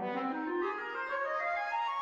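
Woodwind quintet (flute, oboe, clarinet, horn and bassoon) playing a short rising run handed from the bassoon up through horn, clarinet and oboe to the flute. The pitch climbs steadily across the two seconds.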